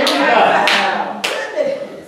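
Three sharp hand claps spaced about half a second apart, with voices calling out over them in response to the preaching. The voices fade near the end.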